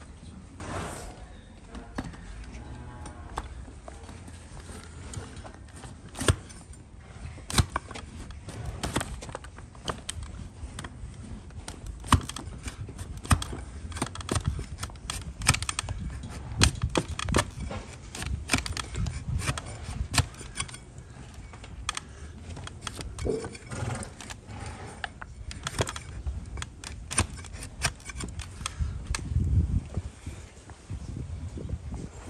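A flat, newly sharpened hoof-paring blade shaving slices of horn off a donkey's hoof: a run of sharp cutting and scraping clicks at uneven intervals, some louder than others.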